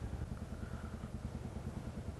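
Motorcycle engine running at low speed, a steady low throb of evenly spaced firing pulses.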